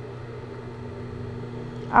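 A steady low hum with no stitching, clicks or other distinct events.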